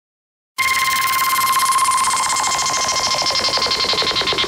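Synthesized electronic intro sound: after about half a second of silence, a steady high beeping tone starts over rapid pulsing noise that sweeps steadily downward in pitch.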